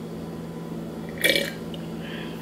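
A single short throat sound about a second and a quarter in, as a sip from a mug is swallowed, over a steady low hum.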